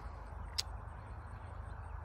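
Quiet outdoor pasture background with a steady low rumble, and one brief high click about half a second in.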